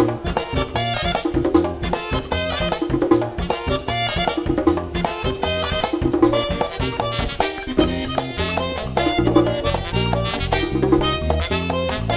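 A live Latin band playing dance music, with percussion and a bass line keeping a steady rhythm and no singing.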